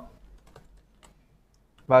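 Computer keyboard typing: a scattered run of light key clicks while code is entered.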